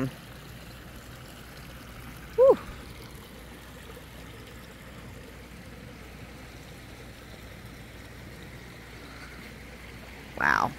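Backyard pond waterfall running with a steady rush of falling water. About two and a half seconds in, one short, loud note rises and falls in pitch.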